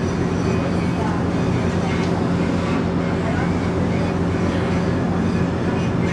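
A steady, unchanging low engine hum with a constant drone under an even background noise.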